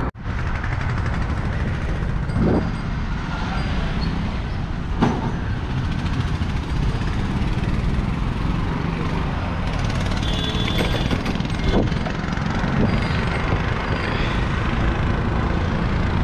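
Steady rush of road and traffic noise with wind on the microphone while riding a bicycle past cars, with a few brief knocks.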